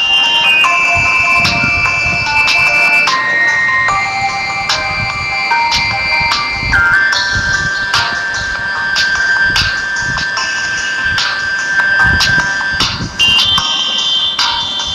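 Background music: a simple, high-pitched electronic melody of long held notes stepping from one pitch to the next, with light percussive taps.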